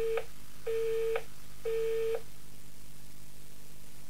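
Telephone busy tone after the caller hangs up at the end of a recorded phone message: the end of one beep, then two more, each a single steady pitch about half a second long with half a second between. After the beeps only a faint steady line hiss remains.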